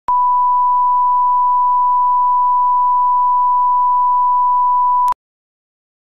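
A steady 1 kHz line-up test tone, a single unwavering pitch, played with colour bars. It starts with a click and cuts off suddenly with another click about five seconds in.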